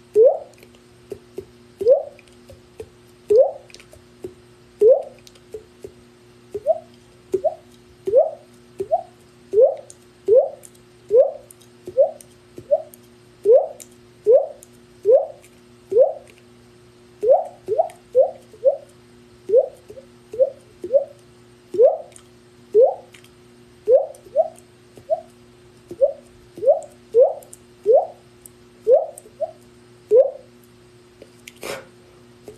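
A man making water-drop sounds with his mouth: a long run of short pops, each rising in pitch, coming irregularly about one or two a second with some quick runs of two or three.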